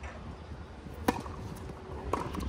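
Tennis racket striking the ball on a serve: one sharp crack about a second in.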